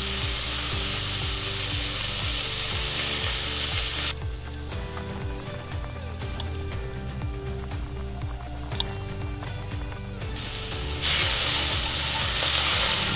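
Chopped onion, carrot, celery and garlic sizzling in oil in a cast iron Dutch oven while being stirred with a spatula. The sizzle drops away about four seconds in, leaving soft background music, and comes back about a second before the end.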